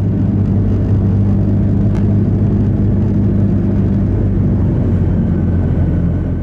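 Airbus A330-300 cabin noise heard from a window seat beside the right engine during climb: a loud, steady drone with a deep low hum. The engine is the one damaged by a bird strike, which the crew is running at reduced thrust to keep its vibrations down.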